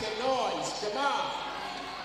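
A man's voice calls out twice in short calls that rise and fall in pitch, over the steady background noise of an arena during live basketball play.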